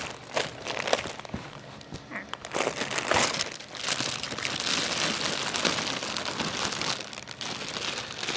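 Plastic wrapping crinkling and rustling as a wrapped bundle of baby bedding is handled and pulled open, the crackling growing busier and more continuous partway through.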